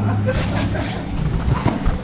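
Scuffling of bodies and martial-arts uniforms on a foam training mat as a grappling hold is released, with a few dull thumps near the end.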